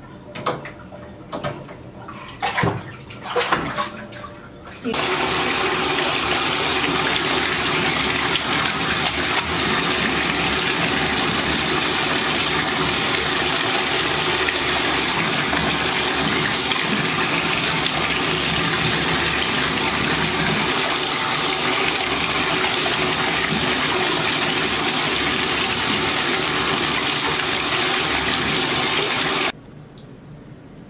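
Bathtub spout running to refill a tub: a steady rush of water that starts suddenly about five seconds in and is shut off just before the end.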